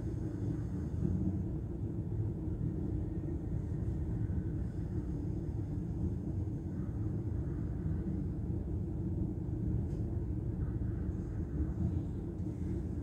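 Passenger train running along the line, heard from inside the carriage: a steady low rumble that does not change.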